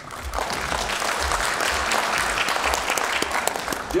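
An audience applauding: many hands clapping together, swelling up within the first half-second and then going on steadily.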